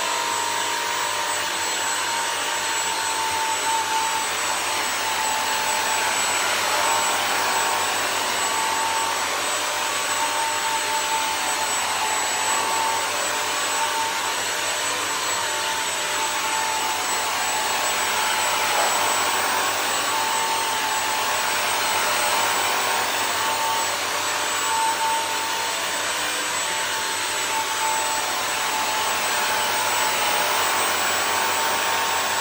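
Bissell CrossWave wet-dry floor cleaner running steadily while washing a rug, its motor and brush roll making a steady whine over a hiss. The whine dips slightly in pitch now and then as the cleaning head moves over the rug.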